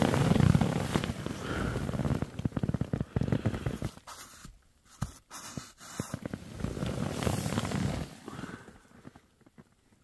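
Rustling and crinkling of tent and sleeping-bag fabric being handled and moved against, full of small crackles, in two spells with a quieter gap between.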